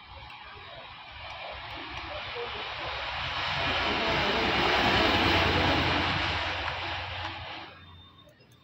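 Engine noise of a passing vehicle, swelling for about five seconds and then fading, cut off suddenly just before the end.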